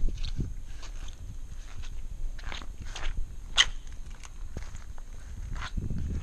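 Footsteps of a person in flip-flops walking on grass, with scattered light clicks and taps, a sharper click about halfway through, over a low rumble.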